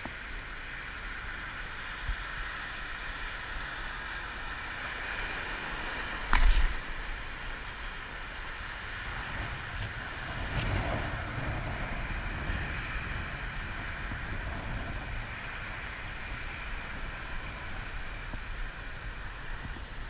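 Steady outdoor background hiss at the shore, with a single sharp knock about six and a half seconds in and a slight low rumble swelling around the middle.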